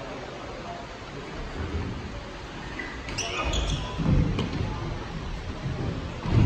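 Dull thuds of feet jumping, landing and running on parkour obstacle boxes, growing heavier in the second half, with faint voices.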